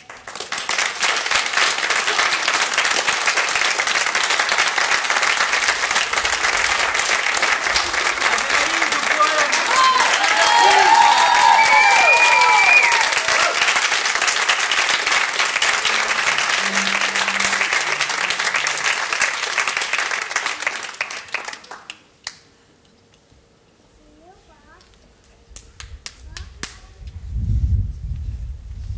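Audience applauding, with a few whoops and cheers about halfway through. The clapping dies away about 22 seconds in, leaving only faint sounds.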